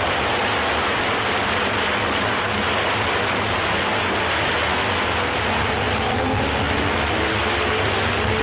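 A steady, loud rushing noise on an old film soundtrack, even in level throughout. Faint held tones come in under it near the end.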